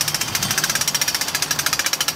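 Small prototype well-drilling rig running, a rapid even mechanical clatter of about a dozen knocks a second.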